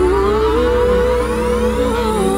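Live electronic nu-jazz band music: a pitched tone slides upward and then holds, over a steady low drone, with many falling sweeps higher up.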